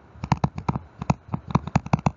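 A stylus tapping and scratching on a tablet screen while handwriting a word: a quick, irregular run of sharp clicks, about a dozen in two seconds.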